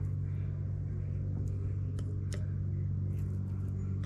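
A few light, sharp clicks of a metal pick tapping and scraping inside the threaded port of a cast-iron hydraulic control valve, over a steady low machine hum.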